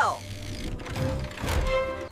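Cartoon sound effect of a vehicle's front winch reeling in its cable under strain: a mechanical rumble with clicking, over background music.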